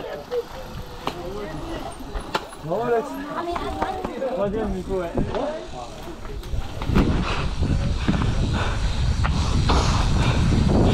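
People talking nearby, then from about seven seconds in a steady rush of wind on the microphone and tyre noise as the mountain bike rolls off down a paved lane.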